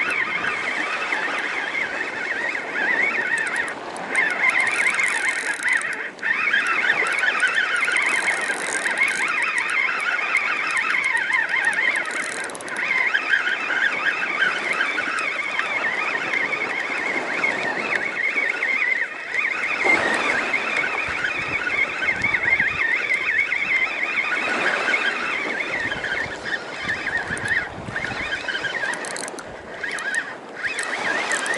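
Spinning reel being cranked steadily, a continuous whirr from its gears and line.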